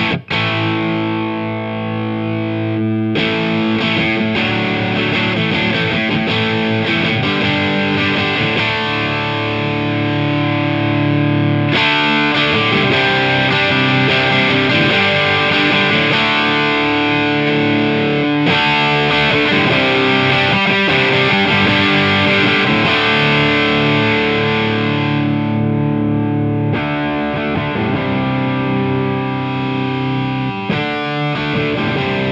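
Electric guitar played through an amplifier and a Way Huge Saucy Box overdrive pedal, a continuous stretch of chords and notes with mild distortion. Its brightness changes abruptly a few times, as settings are switched.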